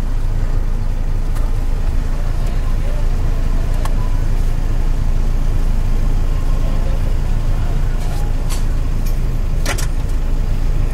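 Car engine idling while the car is stopped, heard from inside the cabin as a steady low rumble, with a few short clicks.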